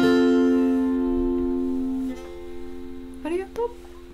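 Acoustic guitar's final chord strummed and left ringing, slowly dying away as the song ends.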